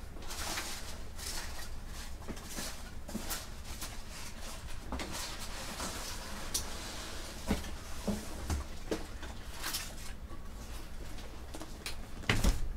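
Cardboard boxes and packaging being handled: scattered rustles, light knocks and scrapes, with a few sharper knocks in the second half, over a steady low hum.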